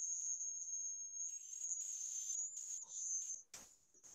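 Interference over a video call from a participant's failing microphone: a steady high-pitched whine with patches of hiss and no voice coming through. It cuts off about three and a half seconds in, with a brief click.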